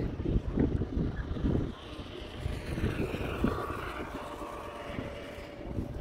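Wind buffeting the microphone, heaviest in the first second and a half, then a faint distant engine drone with a steady hum through the rest.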